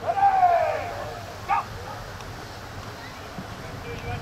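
A man's long shout falling in pitch, then a short second call about a second and a half in, over low outdoor background noise.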